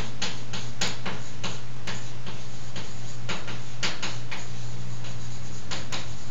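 Chalk writing on a blackboard: an irregular run of sharp taps and short scratches as each letter is written, over a steady low hum.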